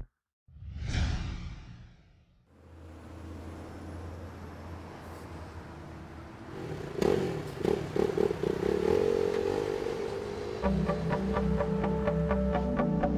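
Motorcycle-advert sound design: a whoosh sweeps through in the first two seconds, then a low drone. About seven seconds in comes a hit and a motorcycle engine revving, and music with a steady beat comes in near the end.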